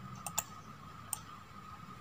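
Three light computer-mouse clicks, two in quick succession about a quarter second in and a third a little after a second, over a faint steady electronic hum.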